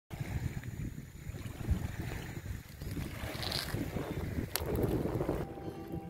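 Wind buffeting the microphone at a lakeshore, with small waves lapping. There is a single sharp click about four and a half seconds in, and steady instrument notes come in just before the end.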